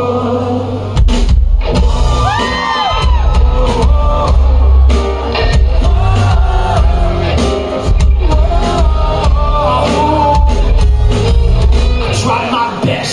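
Live pop band playing with a male singer's voice over it; the bass and drums come in much fuller about a second in, with a steady beat after that.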